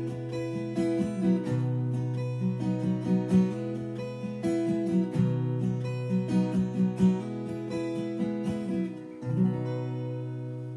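Solo cutaway acoustic guitar played without singing: picked notes and strums over a held bass note. A last chord about nine seconds in rings on and fades.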